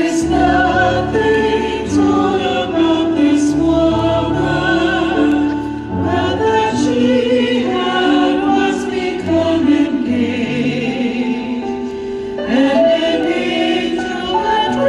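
Music: a choir singing held, sustained notes over a steady low instrumental bass.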